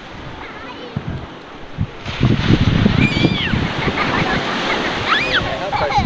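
Sea surf washing onto a sandy beach, the rush of the waves growing louder about two seconds in and staying steady after. A small child's high calls rise over it a couple of times.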